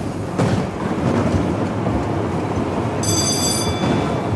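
Fairground ride running: a steady rumbling clatter like wheels on a track. A high ringing tone sounds for about a second near the end.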